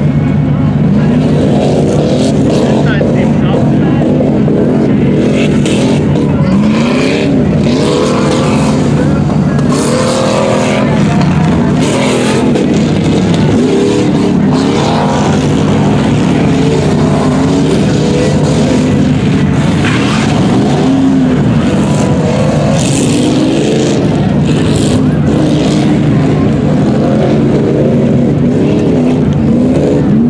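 Light tower's generator engine running at a steady, constant speed close by, a loud unchanging drone, with indistinct speech over it.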